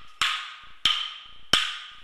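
Wooden clapsticks struck together in a steady beat: three sharp, ringing clacks about two thirds of a second apart.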